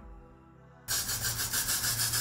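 A loud, rapid rubbing noise lasting about a second and a half starts about a second in and cuts off abruptly. Soft background music plays before it.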